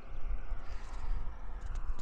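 Wind buffeting the microphone outdoors, an uneven low rumble that rises and falls in gusts.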